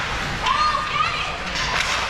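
Voices shouting and calling out over the steady din of an ice hockey arena, with a sharp knock near the end.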